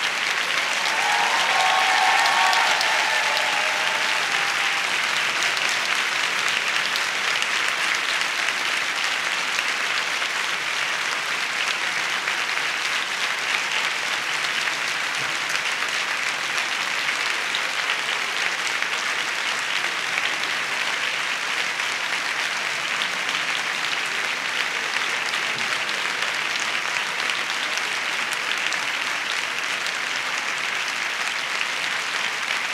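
A large audience applauding steadily for the whole stretch, loudest in the first few seconds. A single voice briefly rises above the clapping near the start.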